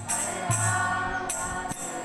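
Group devotional chanting (kirtan), voices singing together over hand cymbals struck in a steady rhythm, with a low sustained tone underneath.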